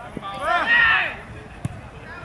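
A man's loud shout on a football pitch about half a second in, with short thuds of a football being kicked, one just before the shout and one past the middle.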